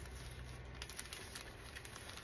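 Faint rustling and a few soft ticks of clear plastic portfolio sleeves being handled and turned, over a low steady room hum.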